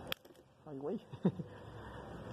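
A single sharp metallic click from handling the car battery's terminals, followed by two short murmured voice sounds and a faint steady background hum toward the end.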